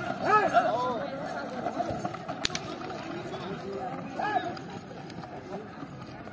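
Men's short shouted calls, a few right at the start and another about four seconds in, over a steady hubbub of an outdoor crowd.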